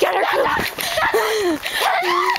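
A dog yipping and barking excitedly as it chases and snaps at a running person, with a person's voice crying out among the yips.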